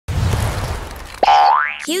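Cartoon sound effects for an animated logo: a loud noisy whoosh with a low rumble for about a second, then a sudden springy boing whose pitch glides quickly upward.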